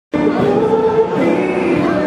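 A street busker's singing amplified through a small portable speaker, holding long notes with musical accompaniment.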